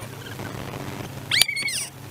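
A car engine idling with a steady low hum while stopped. About a second and a half in comes a short, high-pitched, meow-like squeal lasting about half a second, which rises, holds and then falls away.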